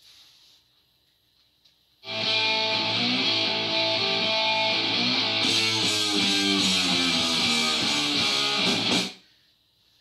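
Electric guitar strumming the song's chorus rhythm on A, C and G chords. It starts about two seconds in and cuts off suddenly about a second before the end.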